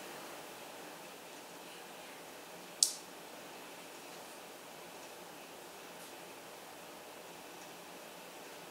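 Quiet room tone, a faint steady hiss, with a single short, sharp click about three seconds in.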